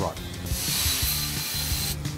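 Plasma cutting torch running on steel plate during a test cut: a steady high hiss with a thin whistle in it that starts about half a second in and stops abruptly near the end.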